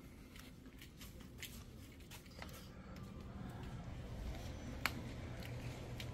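Quiet indoor room tone: a low steady hum that swells slightly toward the end, with scattered faint clicks and taps.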